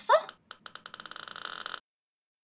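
A woman's short, high, pitch-bending vocal squeal, then a rapid run of ticks that speed up and cut off suddenly near the end.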